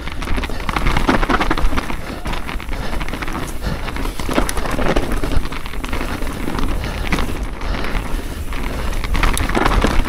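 Mountain bike riding fast down a rough, frosty dirt singletrack: steady tyre noise on the ground, with constant rattling and knocking from the bike over the bumps.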